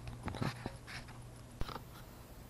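Faint handling noise of a small 3D-printed plastic clip and a piece of electrical tape held close to the microphone, with a few small ticks and one sharper click near the end, over a steady low hum.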